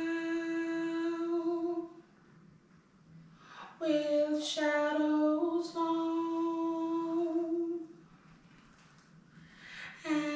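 A woman singing a wordless background-vocal harmony part unaccompanied, long held notes in two phrases with a pause between; each phrase steps up one note partway through.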